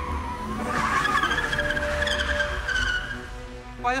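Car tyres squealing as the car brakes hard to a stop: a wavering screech that starts under a second in and dies away after about three seconds, over a low rumble.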